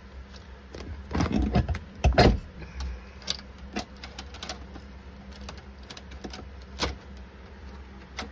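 Irregular clinks and clicks of metal hand tools and parts being handled, with a cluster of louder knocks a little over a second in and again about two seconds in, then a few scattered sharp ticks, over a low steady hum.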